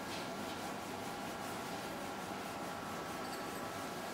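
Steady room noise with a faint steady hum and no distinct event.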